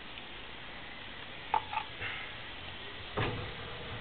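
Faint steady background hiss with a short two-part chirp about a second and a half in, then a single knock about three seconds in as the geophone sensor is picked up and handled.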